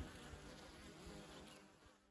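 Faint buzzing of honeybees flying around a hive entrance, fading out near the end.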